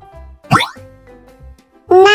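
A short cartoon 'plop' sound effect that sweeps quickly upward in pitch about half a second in, over soft children's background music with a light beat.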